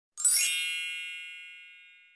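A single bright, bell-like chime with a quick sparkling shimmer at its start, ringing out and fading away over about two seconds: a channel-intro logo sound effect.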